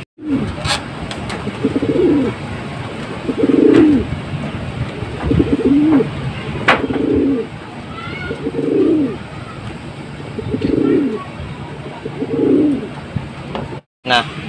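Domestic racing pigeon cooing over and over, low rolling coos about every one and a half to two seconds: courtship cooing as a newly introduced pair takes to each other. A few short sharp taps come between the coos.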